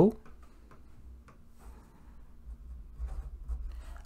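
Marker pen writing on paper: a few faint, short scratchy strokes.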